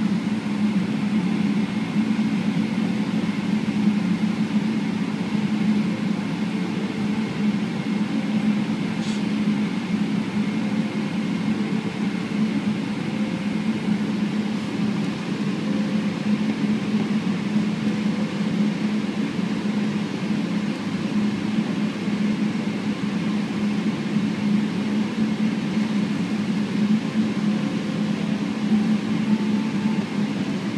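Steady cabin hum inside a Boeing 777-300ER while it taxis, its GE90-115B engines at idle. A brief faint tick comes about nine seconds in.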